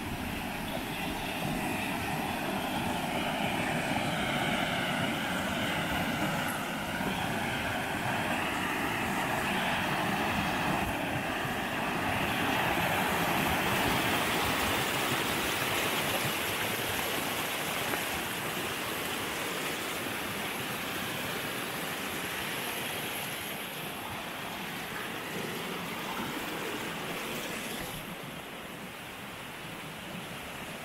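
Shallow river water rushing over small rocky cascades, a steady hiss that grows louder midway as the cascades come close and eases off near the end.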